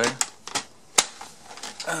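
Plastic parts of a Dyson DC29 upright vacuum clicking as a clear plastic piece is pushed onto the cyclone bin top, with one sharp snap about a second in as it clips into place.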